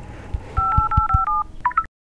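Telephone keypad dialing tones: a quick run of about seven two-note beeps in under a second, then a few shorter beeps, before the sound cuts out abruptly near the end.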